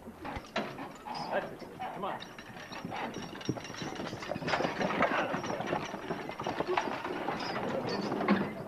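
A team of draft horses in harness moving off: a steady, busy clatter of hooves with rattling harness and hitch chains, building up over the first few seconds.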